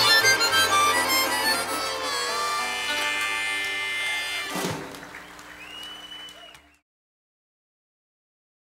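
Live acoustic string band with harmonica and fiddle over upright bass and guitars, ending a song on a held final chord. A sharp final hit comes just past the middle, the chord dies away, and the sound cuts off abruptly.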